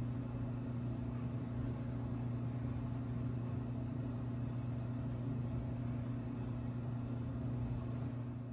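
A steady low electrical hum, one even droning tone with its overtone, unchanging throughout.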